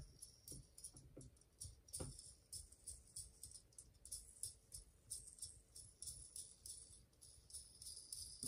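Faint, light clicking and rattling of a small plastic model-kit roller assembly being turned by hand, its O-ring-fitted cylinders spinning inside the closed casing.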